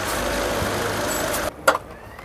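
A steady mechanical running noise with a low hum, like a motor running. It cuts off abruptly about one and a half seconds in, leaving a few light knocks.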